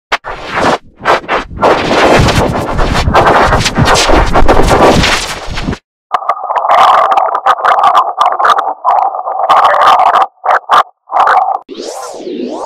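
Digitally distorted effects-edit audio: about six seconds of harsh, stuttering noise, then a choppy buzzing midrange tone that keeps cutting in and out. Right at the end a warbling, wavering tone begins.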